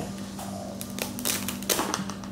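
Rustling and crinkling of a tote bag and packaged food as items are lifted out of it. It comes in a few short bursts in the second half, over a steady low hum.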